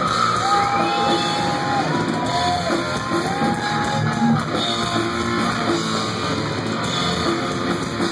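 Heavy metal band playing live through a club PA: distorted electric guitars with several held, bending notes over drums and bass.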